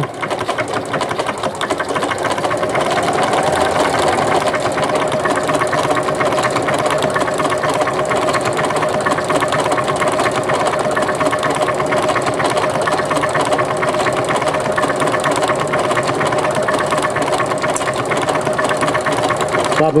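Janome MC9000 computerized sewing machine stitching a decorative stitch: a rapid, even clatter of the needle mechanism and motor. It gets louder over the first few seconds as the speed control is worked, then runs steadily.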